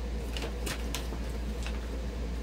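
A few short crinkles and clicks from a plastic dog-treat pouch being handled, over a steady low hum.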